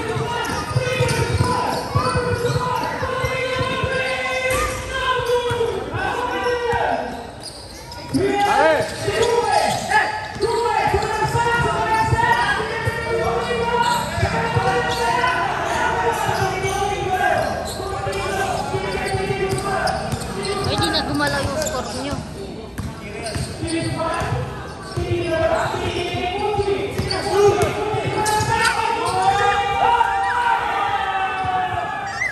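A basketball bouncing and players' shoes moving on a hard court during a game, under steady talking and calling out from players and onlookers.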